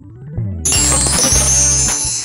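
A video transition sound effect: a rising sweep, then, about half a second in, a sudden bright, high-pitched shimmering burst like something shattering. It plays over the start of background music with steady low notes.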